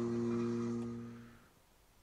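The last strummed chord on an acoustic guitar ringing out, fading away and ending about a second and a half in.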